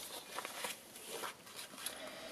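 Faint rustling of cardstock and baker's twine being handled as the twine is wound around a scrapbook page, with a few soft ticks.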